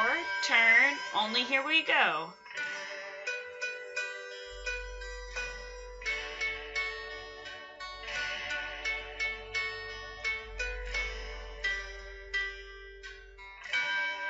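Play-along backing recording for a beginner recorder tune: short plucked-string notes that ring and fade at a slow, even beat under a melody of held notes. The first two seconds carry a wavering, sliding voice-like sound.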